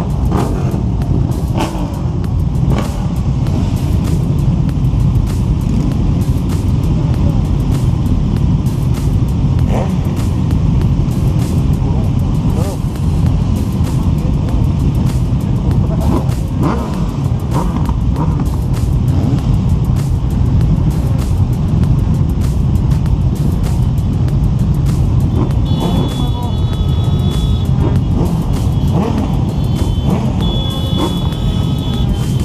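A large crowd of motorcycles running together, a dense steady engine rumble with scattered short clicks. A high steady tone comes in near the end.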